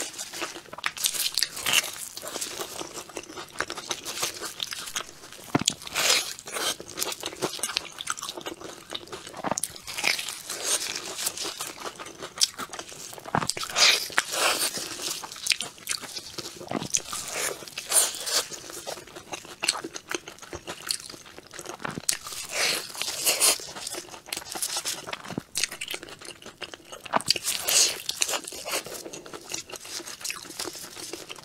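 Close-miked eating: bites into and chewing of a sesame-seed-crusted, biscuit-topped bun with a soft yellow filling, with irregular crisp crunches all the way through.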